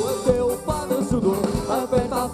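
Live pop band playing an upbeat Portuguese dance song: drum kit beat, bass and electric guitar, with a melodic lead line in a short passage between sung lines.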